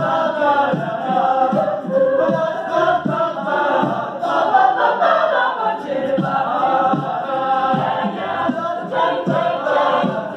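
A mixed high-school vocal ensemble sings in close harmony into microphones, with a steady low beat underneath about twice a second.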